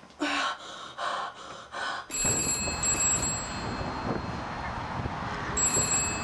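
A boy gasps three times in quick, breathy bursts. About two seconds in, this gives way to steady outdoor noise: wind buffeting the microphone, with a low rumble.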